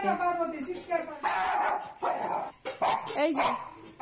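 Pet dogs barking in short bursts.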